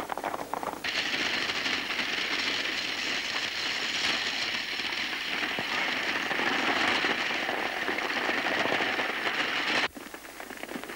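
Galloping horse team and stagecoach: a dense, steady clatter of hoofbeats and rattling wheels that starts abruptly about a second in and cuts off just before the end.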